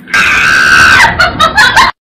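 A person screaming: one loud, rough, held scream about a second long, then a few short choppy cries, cut off suddenly near the end.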